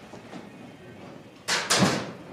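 Wooden anti-roost bar of an old chicken feeder turned by hand, giving a brief double wooden clatter about one and a half seconds in.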